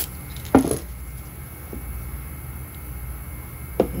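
A single sharp knock, as of a tool or clamp set against a workbench, about half a second in, and a lighter click near the end, over a steady low hum.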